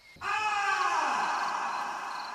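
A mouse's long, ghostly howl: one drawn-out call that starts about a fifth of a second in and slowly falls in pitch as it fades.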